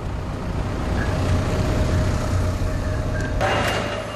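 Collection truck's engine running, heard from inside the cab as a steady low rumble. Near the end it gives way abruptly to a hissier background sound.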